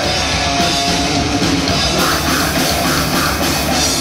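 Death metal band playing live: heavily distorted electric guitars, bass and a drum kit in a loud, dense wall of sound, the cymbals brightening about halfway through.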